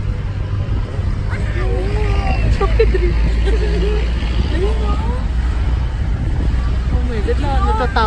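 Steady low rumble of a car's engine and road noise heard from inside the cabin while driving, with voices talking over it.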